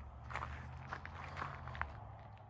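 Several footsteps on gravel, faint and irregular, over a low steady hum.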